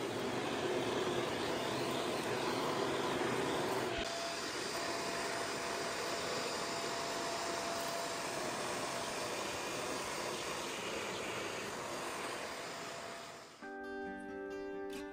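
Vacuum cleaner running steadily, its tone shifting once about four seconds in. Near the end it cuts off abruptly and acoustic guitar music starts.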